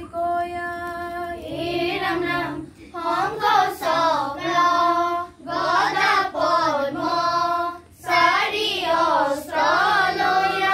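A group of children singing dihanaam, an Assamese devotional chant, together in unison, in sung phrases broken by short pauses for breath.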